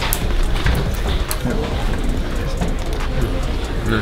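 Background music with a low, continuous bass under indistinct voices, with a few light clicks.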